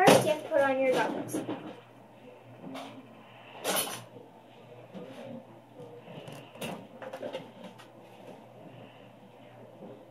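A short voice sound in the first second or so, then tabletop handling: a short, sharp knock about four seconds in as a plastic gallon vinegar jug is set down, and a few lighter knocks after it.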